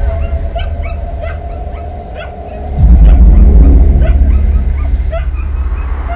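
Caged dogs whimpering and yipping in many short, high cries, over a deep, dark music score that swells loudly about three seconds in.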